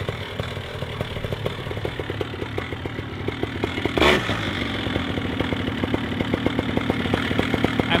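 Paramotor engine idling, a steady run of even pulses under a low hum, with one sharp knock about four seconds in.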